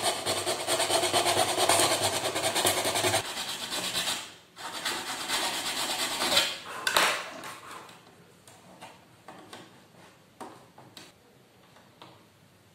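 A small file rasping back and forth in a hole in a hard plastic casing, smoothing the hole's rough edge. The rapid strokes run for about seven seconds with a short pause partway through, then give way to faint clicks of the plastic case being handled.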